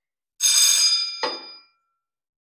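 Metal clank from the steel saw holder and its clamping lever on a saw-sharpening grinder, ringing on with several high, bell-like tones that die away over about a second.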